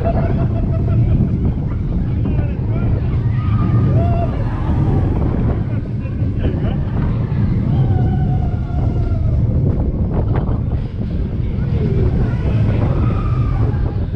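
Roller coaster train running backwards along its track: a steady deep rumble with wind buffeting the on-ride microphone, and faint rider voices above it.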